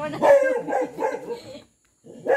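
A dog barking and yipping in a quick run of short calls for about a second and a half.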